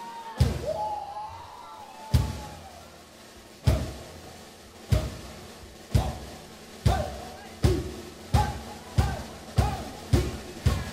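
Drum kit played in single loud accented hits with the bass drum, each left to ring out. The hits start well spaced and gradually speed up.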